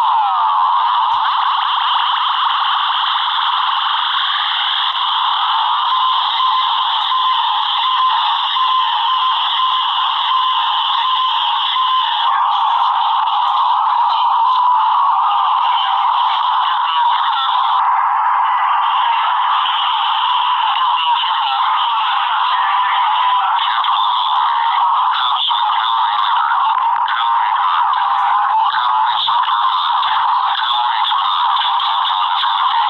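Sped-up, heavily distorted soundtrack of an animated cartoon playing at nearly three times normal speed. It is a dense, tinny, high-pitched jumble with no low end and stays loud throughout.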